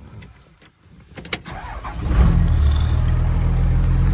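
A few sharp clicks, then a diesel truck engine starts about two seconds in and settles into a steady low idle rumble. This is the 1972 Ford F350 crew cab's twelve-valve Cummins diesel.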